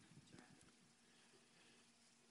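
Near silence: faint room tone, with a couple of very faint ticks about a third of a second in.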